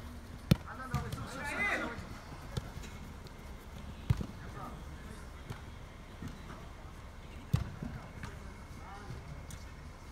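A soccer ball being kicked on artificial turf: sharp thumps about half a second in, around four seconds in and again near seven and a half seconds, with a few lighter knocks between. Players shout and call out between the kicks, loudest a second or two in.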